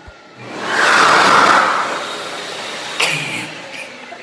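Xlerator high-speed hand dryer blowing, set off by a hand beneath it: a loud rushing hiss that swells about half a second in, peaks near one second and then eases to a lower steady blow. A sharp knock comes about three seconds in.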